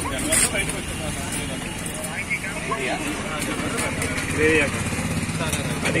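Background chatter of several people over a steady low engine rumble from a motor vehicle, with a few sharp clinks of steel serving spoons against steel pots.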